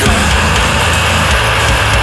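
A progressive deathcore song at full band: heavily distorted electric guitars and bass over drums, with a dense low end.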